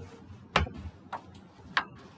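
Three sharp clicks or taps, a little over half a second apart.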